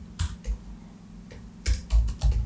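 Computer keyboard keys pressed one at a time: a few separate sharp clicks spread out, with two louder ones close together near the end.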